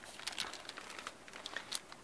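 Glossy magazine pages rustling and crinkling faintly in a run of small irregular crackles as they are handled and pressed.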